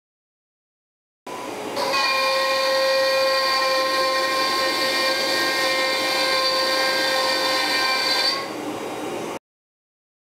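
Carbide 3D CNC router spindle running with a steady high-pitched whine made of several fixed tones over a hiss. It starts suddenly about a second in, grows louder about half a second later, drops back a second before the end and cuts off suddenly.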